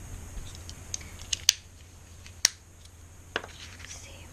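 A few sharp plastic taps and clicks as a small ink pad is dabbed onto a clear acrylic stamp block and the block is handled. There are about five separate clicks, the two loudest near the middle.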